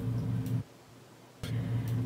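Steady low electrical hum with a few faint ticks. It cuts out to near silence for under a second in the middle, then resumes.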